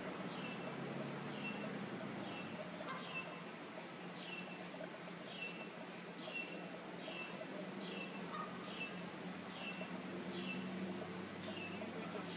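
A small bird calling, a short down-slurred whistle repeated about twice a second in a long steady series, over a steady low background hum.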